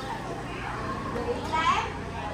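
Indistinct chatter of several people, with a child's high voice briefly louder near the end.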